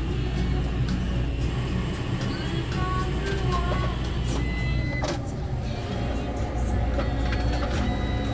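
Self-service photo print kiosk's printer running with a steady low hum while it prints, with a sharp click about five seconds in; background music plays along.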